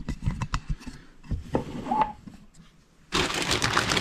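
A few light knocks and clicks of handling, then, about three seconds in, a clear plastic bag wrapped around a heavy bench power supply suddenly starts crinkling loudly as hands grip it.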